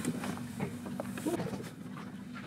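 Boat's outboard motor idling with a low, steady hum, a few faint clicks scattered over it.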